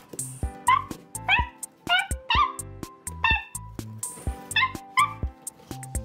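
Background music with a steady beat, over which come about seven short, high-pitched dog yips, singly and in quick pairs.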